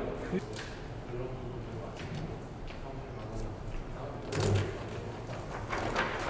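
Quiet hallway room tone with faint background voices, and a single soft thump about four and a half seconds in.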